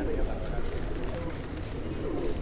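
Outdoor ambience of background voices with birds cooing.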